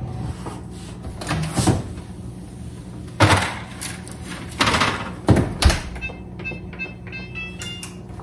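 Oven door opening, a sheet pan being slid onto the oven rack and the door shut: a handful of separate clunks and knocks over about four seconds. A quick run of short tones follows near the end.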